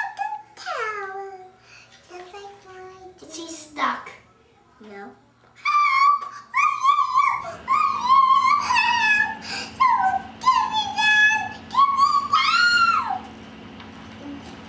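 A child's high voice making wordless sing-song sounds that rise and fall in pitch, louder in the second half. A faint steady low hum comes in about halfway through.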